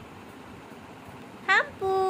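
A short high call that swoops up in pitch, then, just before the end, a long steady high-pitched call held on one note. Both come from a single voice.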